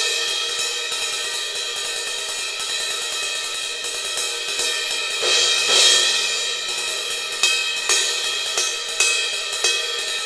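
Sabian cymbal played as a ride with a drumstick: a steady run of stick strokes over a ringing, shimmering wash, with a louder swell of the cymbal's body just past the middle and a few sharper, harder hits near the end. The strokes test whether the stick definition stays clear above the swell of the body as he plays harder.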